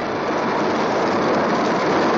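Steady mechanical noise of factory machinery, growing slightly louder.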